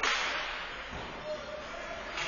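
A single sharp crack of an ice hockey stick or puck strike right at the start, ringing briefly in the rink's hall, then the steady hiss of play on the ice.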